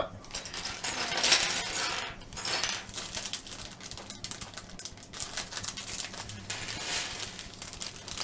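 Loose plastic Lego pieces clattering and clicking against each other and the table as hands sort through them and press them together.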